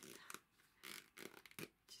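Faint handling sounds: a few soft rustles and light taps as hands pick up and handle a small carved wooden box at a table.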